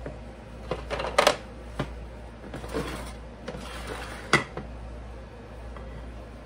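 Kitchen handling sounds of baking dishes on a countertop while fish fillets are arranged in them: a few light knocks and clicks, the sharpest about four seconds in.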